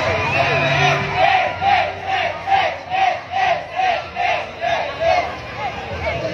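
A group of parade marchers chanting a short shout in unison, about ten times in quick rhythm, over general crowd noise; the chant stops about five seconds in.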